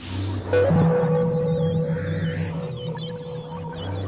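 Experimental sampler-made electronic music: a pulsing low bass with a long held tone coming in about half a second in, and a thin wavering high tone above it.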